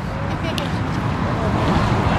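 Steady roar of highway traffic, swelling toward the end as a vehicle passes close by, with faint voices in the background.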